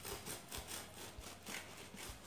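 Serrated bread knife sawing into a chocolate sponge cake: faint, irregular rasping strokes a few times a second.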